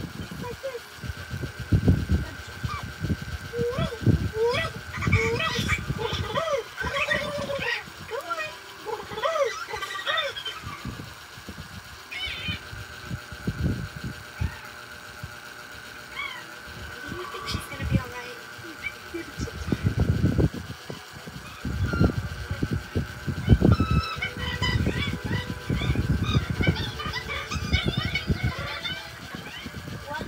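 Animated bird character's squawks and chirps from a film soundtrack, a run of short calls that keep rising and falling, with low thuds in the last third. The sound is played through a TV's speakers, with a faint steady tone under it.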